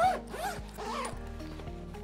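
A duffel bag's middle-pocket zipper being pulled along its track, running smoothly without catching, over background music.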